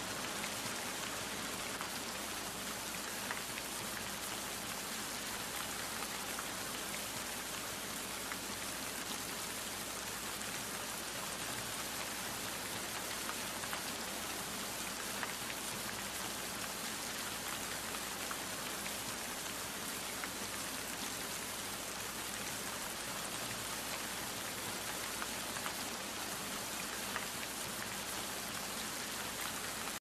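A steady, even hiss of noise with a few faint ticks scattered through it.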